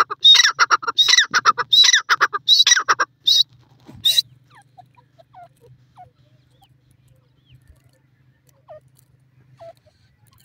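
Grey francolin calling in a rapid run of loud repeated notes for about three seconds, with two more short calls near the four-second mark, then falling quiet apart from faint chirps.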